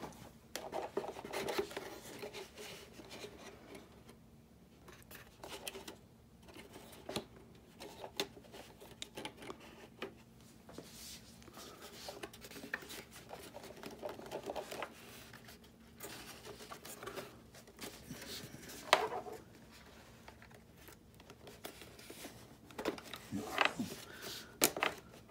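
Handling noise of model jet airframe parts being fitted together by hand: irregular rubbing, scraping and small clicks as the aft fuselage section is slid and pressed into place, with one sharp click about three quarters of the way through and a few knocks near the end.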